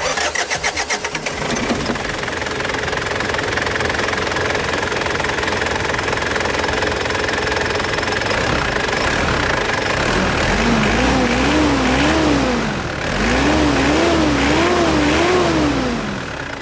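Mitsubishi Pajero's intercooled turbo-diesel engine being cranked and catching, then idling steadily. From about ten seconds in it is revved up and down again and again, in two runs of quick blips with a short pause between.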